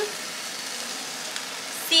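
Corn kernels with onion and garlic sizzling steadily in a nonstick frying pan on a gas burner as they are stirred with a spatula.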